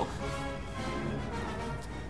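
Background music with sustained, steady notes.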